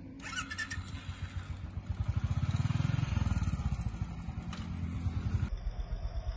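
Royal Enfield Thunderbird 350 single-cylinder engine running, its firing pulses coming at an even, quick rhythm. It gets louder about two seconds in and then settles back. The sound breaks off suddenly just before the end.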